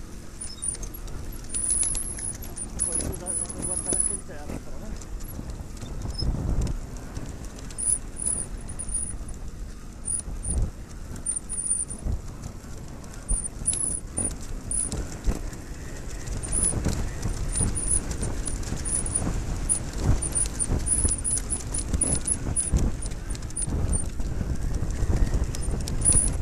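Trials motorcycle ridden slowly over rough, stony grass, its engine running at low revs under irregular knocks and rattles as the bike jolts over bumps.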